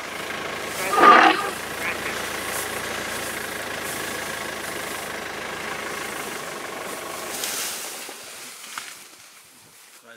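Safari vehicle's engine running with a steady low hum, fading away about eight seconds in. A brief loud sound comes about a second in.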